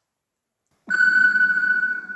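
Silence, then about a second in a synthesized transition sound effect starts suddenly: one steady ringing tone with fainter overtones over a low rumble, held on.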